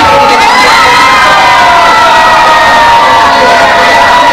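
A crowd cheering and shouting loudly, many high voices held together at once.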